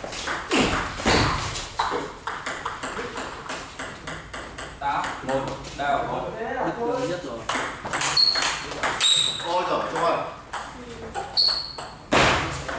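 Table tennis ball clicking off bats and the table in quick sharp knocks, with several short high pings in the second half.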